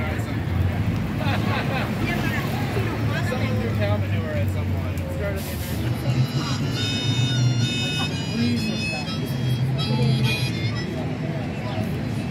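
Outdoor street-market ambience: passersby talking and street traffic running. From about halfway through, music with held high notes that step in pitch plays over it until near the end.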